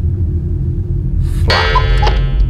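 Background music: a steady low bass drone, then about one and a half seconds in a bright bell-like chime strikes and rings out.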